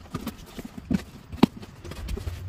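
Cardboard shipping box being cut open with a box cutter and handled: irregular knocks, taps and scrapes on the cardboard, the loudest knock about one and a half seconds in.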